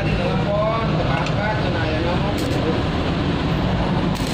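Stick-welding arc crackling as a welding electrode tacks thin steel sheet, over a steady low hum.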